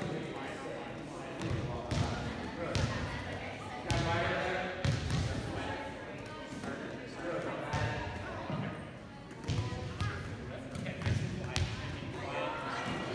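Volleyballs being set and bounced: irregular sharp slaps and thuds, about one a second, as hands strike the balls and balls drop onto a hardwood gym floor, with girls' voices chattering in the background.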